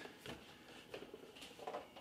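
Faint, brief handling sounds of a cardboard game box and the paper and card contents inside it being touched, with a couple of soft taps about a second in and near the end.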